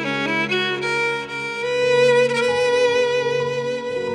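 Background music: a slow violin melody over held lower string notes.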